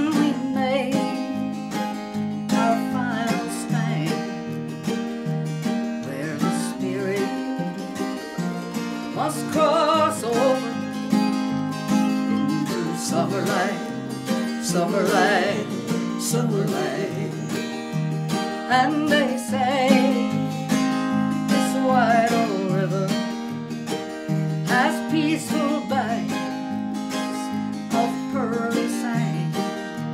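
Acoustic guitar strummed, with a mandolin playing along in a country tune.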